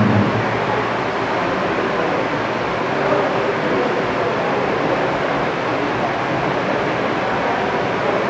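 Steady background noise: an even hiss and rumble with no distinct events.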